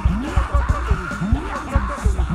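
Congregation praying aloud all at once, many voices overlapping, over background church music with a steady drum beat a little over twice a second.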